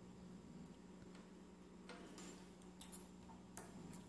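Near silence: room tone with a faint steady hum and a few faint ticks, about three of them spread over the moment.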